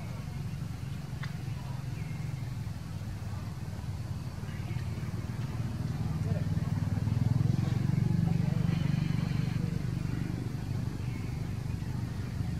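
Low rumble of a vehicle engine passing, swelling to its loudest about seven to nine seconds in and then easing, with a few faint short high calls over it.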